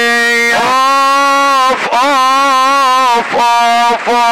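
A single melodic line in Middle Eastern style plays long held notes, sliding up into each one, with short breaks between phrases.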